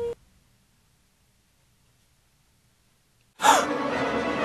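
Near silence for about three seconds, the soundtrack cut dead. Near the end it is broken by a sudden loud sound with a short falling pitch, which runs on into a steady, noisy background.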